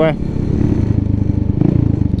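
Engine of a 2003 Baimo Renegade V125 custom 125cc cruiser motorcycle running steadily while riding, with a slight swell about one and a half seconds in.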